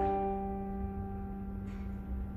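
Piano and vibraphone holding a soft chord that rings on and slowly fades, with a new low note struck at the start.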